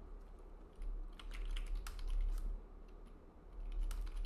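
Typing on a computer keyboard: a quick run of keystrokes starting about a second in, with a few more near the end, as a short phrase is typed.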